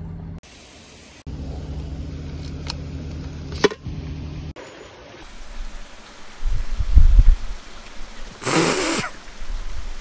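Narrowboat's diesel engine running steadily at low revs, with a sharp click about three and a half seconds in. After a cut, loud low rumbles about seven seconds in and a short rush of noise near the end.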